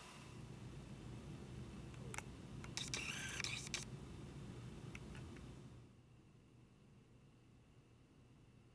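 Faint low rumble of the MTH Rail King SD70ACE model diesels' idle sound, with a few clicks and a brief hiss about three seconds in; it drops to near silence in the last two seconds.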